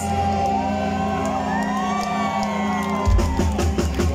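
Live heavy metal band: electric guitars and bass ring out a held chord with gliding high notes over it while the crowd whoops, then the drum kit comes in with a fast beat about three seconds in.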